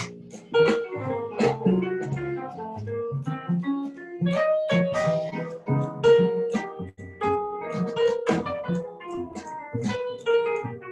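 Jazz piano trio playing: acoustic grand piano with upright double bass and drum kit, the drums sounding as short sharp strikes over the notes.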